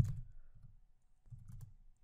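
Computer keyboard keystrokes: one sharp key click at the start, then a few faint key taps as a typed line is deleted.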